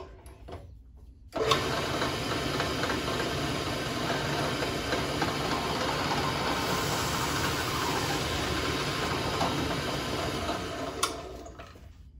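Old Milwaukee drill press switched on about a second in and running steadily while its 3D-printed cutter is fed down into a sheet of foam, then switched off near the end and winding down, with a click as it stops.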